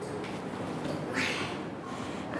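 Indistinct classroom background noise: a soft, even hiss with no clear voice in it.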